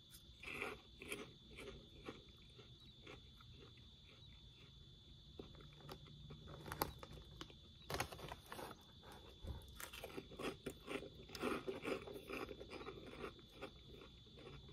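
Close chewing of a crunchy fried pork rind, quiet crackling crunches. About eight seconds in, the snack bag crinkles as it is picked up and handled.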